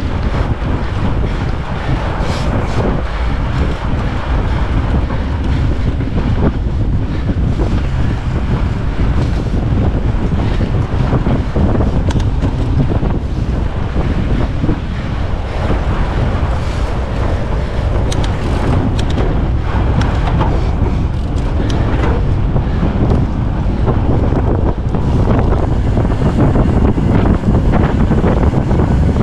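Wind buffeting a GoPro Hero 10 Black's microphone on a fat bike moving over packed snow, with scattered short clicks and rattles. The wind noise grows a little louder near the end as the bike picks up speed coasting downhill.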